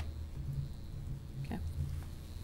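Low, uneven rumble of room noise with a single short click about one and a half seconds in.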